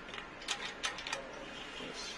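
Loosened length stop on a cut-off saw's aluminium measuring fence being shifted along the rail, giving about five short metallic clicks and scrapes in the first second or so.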